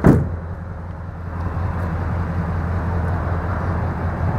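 A sharp knock at the very start, then a vehicle's engine idling with a steady low hum and a light rushing noise that builds a little after the first second.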